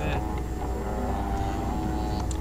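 MakerBot dual-extruder 3D printer running mid-print: a steady mechanical hum with a few held tones from its motors and fans.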